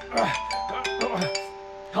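A phone ringing with an electronic chime ringtone for an incoming call: several ringing tones that start one after another and overlap, with light clicks. Two short falling voice sounds come in over it.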